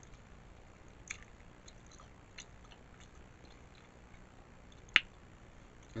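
Quiet close-miked chewing of a pickle roll-up (pickle and cheese wrapped in an air-fried tortilla), a few small mouth clicks, with one sharper click about five seconds in.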